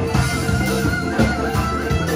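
A live band playing: a frame drum beats a steady rhythm under keyboard and guitar.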